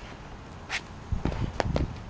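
Sneakers stepping and hopping on a concrete driveway, with soft thuds of a footbag being kicked, scattered unevenly through the second half.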